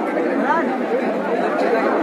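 Crowd chatter: many people talking at once, a steady mix of overlapping voices with no single voice clear.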